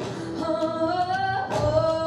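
Female voice singing a wordless, gliding 'oh' melody into a handheld microphone over soft musical accompaniment, the opening of a live song cover.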